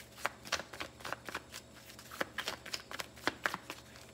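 Tarot deck being shuffled between the hands: a quick, irregular run of soft card snaps and slaps, about three a second.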